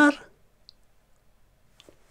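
A man's voice trails off at the end of a spoken question, then a quiet room with two faint small clicks: a tiny tick under a second in and a slightly stronger click near the end.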